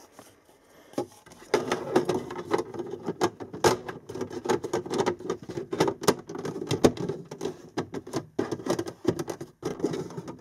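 Plastic trim cover on a Toyota Sequoia's cabin air filter housing being handled and fitted back into place. It makes rapid clicking, knocking and scraping, a dense run of sharp clicks starting about a second and a half in.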